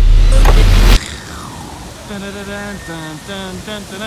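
A loud low rumble with a rising whoosh that cuts off abruptly about a second in. Then a man sings a slow tune in short held notes.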